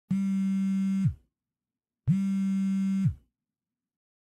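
Two electronic phone call-tone beeps, each about a second long with a second's gap between them. Each is a low, buzzy steady tone that drops in pitch as it cuts off.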